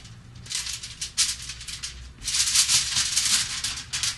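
Heavy-duty aluminium foil crinkling as its edges are folded over by hand to seal a cooking pouch, in two spells, the second longer.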